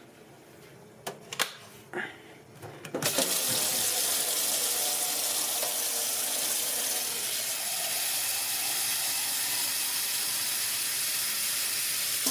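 A few light clicks, then about three seconds in a kitchen tap is turned on and water runs steadily into a stainless steel sink.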